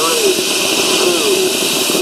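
Steady, loud, high hiss of the operating Saturn V scale-model launch pad venting jets of white vapour before ignition, cutting off abruptly right at the end.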